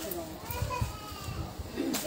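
Faint voices in the background, with a few low thumps underneath.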